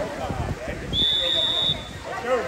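A referee's whistle: one short, steady, high blast about a second in, over spectators' chatter.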